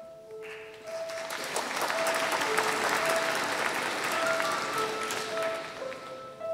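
Audience applauding, starting about half a second in and dying away near the end, over a quiet instrumental melody of single held notes.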